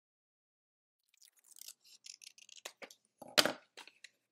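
Scissors snipping through paper and the paper rustling in the hands, starting about a second in, with one louder sharp snap or click about three and a half seconds in.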